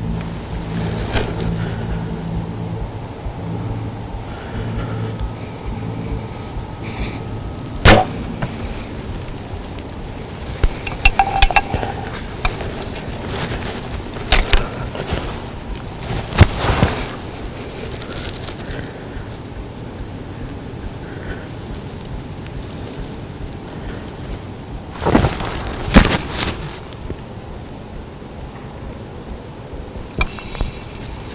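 A bow shot at a deer: one sharp crack about eight seconds in, the loudest sound here. Scattered rustles and knocks follow in bunches, twice as loud as the crack near the end.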